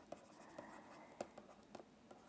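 Faint scratching and a few soft ticks of a stylus writing on a tablet screen.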